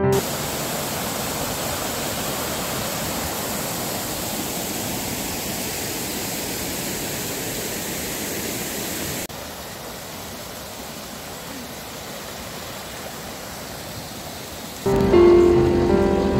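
Steady rushing of a fast-flowing stream. About nine seconds in it drops suddenly to a softer, duller rush. Piano music comes back near the end.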